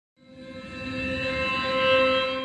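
Omnisphere audition preview of the 'Apparitions in the Piano 3' soundsource, an upright piano morphed with vocal noise. One held synth note swells in shortly after the start and keeps growing louder, with a breathy, noisy edge under a rich steady tone.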